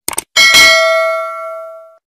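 Subscribe-animation sound effect: a quick double mouse click, then a bright bell ding that rings out and fades away over about a second and a half.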